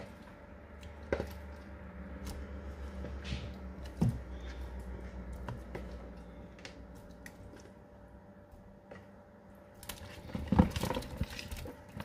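Pieces of chicken and meat being dropped from a plastic bowl into a large pot of stew, with a few single knocks and then a burst of louder knocking and clatter about ten seconds in. A low steady hum sits under the first half.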